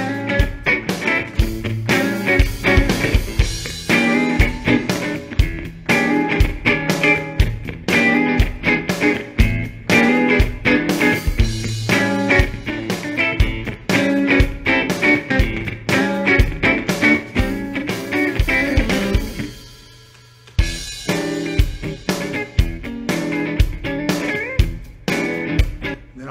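Electric guitar playing over a backing track with drums, in a steady rhythm. The music briefly drops away about three-quarters of the way through, then comes back in.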